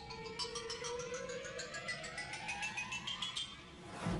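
Synthesized musical sound effect: a tone gliding steadily upward for about three seconds over a fast, even ticking pulse, both stopping together a little after three seconds.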